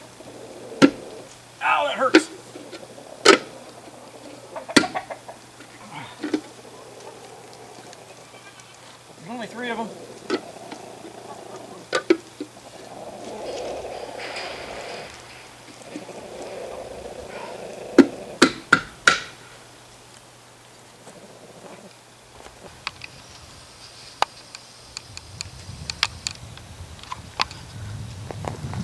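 Chrome dog dish hubcap being pressed and knocked by hand onto a steel wheel rim: irregular sharp metallic knocks, with a cluster of them a little past the middle.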